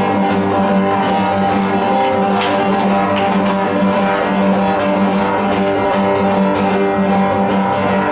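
Acoustic guitar playing chords in a steady instrumental passage, without any voice.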